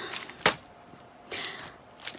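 Clear plastic sleeves and bubble-wrap packaging rustling as sealed notebooks are handled. There is a sharp tap about half a second in and another short crinkle near the end.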